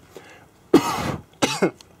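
A man coughs twice: a harsh first cough about three-quarters of a second in, and a shorter one about half a second later. He is coughing on the acrid smoke from a burnt-out microwave inverter board.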